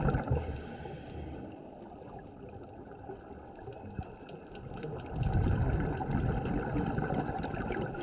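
Scuba regulator breathing heard underwater: bubbles of an exhalation rumble and burble and die away in the first half second. A quieter stretch with a fine crackle of clicks follows, then another long bubbling exhalation starts about five seconds in.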